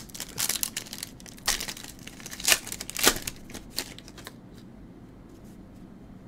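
Sealed foil wrapper of a Topps Finest trading-card pack being torn open and crinkled in the hands: a run of irregular crackles and rips, the sharpest about a second and a half, two and a half and three seconds in, thinning out after about four seconds.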